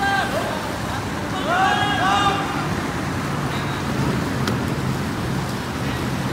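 Kayakers shouting calls to one another, one short call right at the start and a couple more about one and a half to two seconds in, over a steady rush of background noise.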